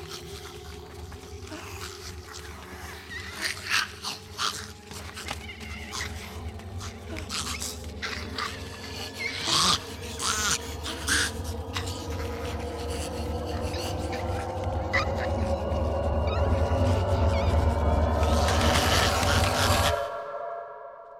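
Film soundtrack of a horror sequence: animal-like cries and sharp clicks from a crowd of zombies over an eerie score of sustained tones. The score swells and grows steadily louder, then cuts off at the end.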